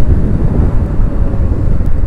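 Kawasaki ZX-6R motorcycle at road speed: wind rushing and buffeting over the microphone, with engine and road noise underneath as a steady rumble.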